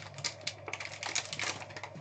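Foil pack wrapper and clear plastic packaging crinkling and rustling in the hands as a trading-card pack is unwrapped, a dense, irregular run of small crackles.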